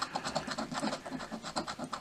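Scratching the coating off a paper scratch-off lottery ticket in rapid, short back-and-forth strokes.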